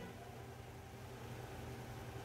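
Quiet room tone: a faint, steady low hum with light background hiss and no distinct events.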